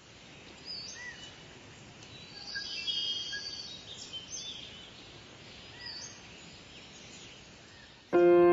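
Small birds chirping and calling over a steady, faint outdoor hiss, with a short high phrase about a second in, a busier burst of chirps around three seconds, and the same phrase again near six seconds.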